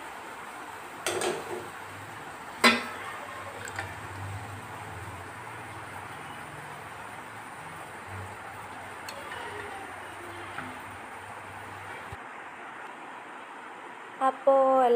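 A hard clink against a steel pot about three seconds in, with a short scrape just before it and a few lighter taps later, as jalebi is handled in sugar syrup. A steady hiss sits under it throughout.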